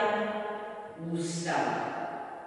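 Speech only: an elderly woman lecturing in Czech.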